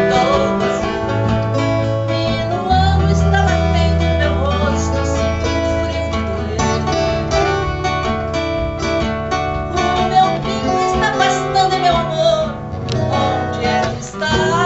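Acoustic guitars playing a southern Brazilian regional song live, with a woman's voice singing the melody over them at times.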